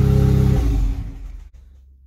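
Ariel Atom 4's turbocharged 2.0-litre Honda four-cylinder engine idling at about 900 rpm, then shut off with the stop button about half a second in. It runs down and has died away by about a second and a half.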